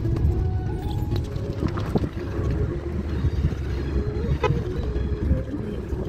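Inside a moving car: steady engine and road rumble, with music playing alongside.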